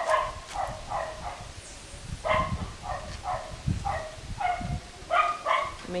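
An animal's short, high-pitched calls, repeated about twice a second with a brief pause about two seconds in, over a few soft low thumps.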